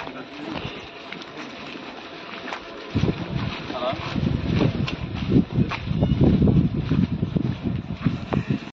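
Indistinct voices of a group of people talking as they walk outdoors, with wind on the microphone. The voices get louder about three seconds in.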